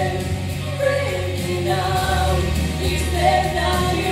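A woman singing live into a microphone over an accompaniment of held low bass notes.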